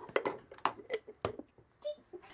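Light clicks and taps of small cosmetic boxes and tubes being handled and set down on a tabletop: a few separate sharp knocks with short pauses between them.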